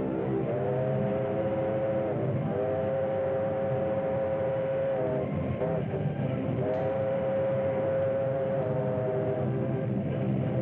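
Steam locomotive chime whistle blowing three long blasts and a short one, each rising into pitch and sagging as it shuts off, over a steady train rumble, on an old narrow-band film soundtrack.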